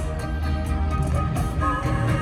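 A bachata band playing live, a plucked guitar line over bass and a steady percussion beat.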